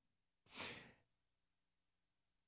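A single short breath from a man at a close microphone, about half a second in, otherwise near silence.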